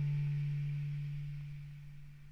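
A guitar note left ringing out: one low, steady tone whose higher overtones have already died away, fading out over the second half.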